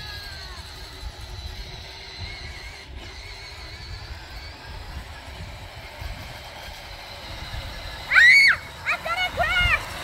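Steady low rumble of a child's battery-powered ride-on toy car driving over grass; near the end a child gives a few loud, high-pitched shouts.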